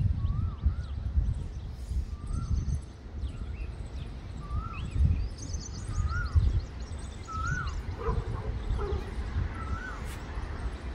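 A bird calling over and over, a short rising-then-falling note about every one to two seconds, with quick high twitters from smaller birds now and then. Underneath, a louder uneven low rumble of wind buffeting the microphone.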